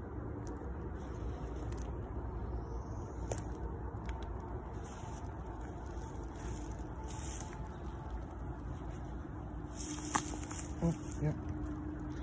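Steady low outdoor rumble, with a faint insect buzz and a few soft clicks coming in near the end.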